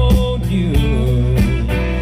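Live country band music: acoustic and electric guitars over a drum beat. A long held note ends shortly after the start, and the guitar lines bend in pitch after it.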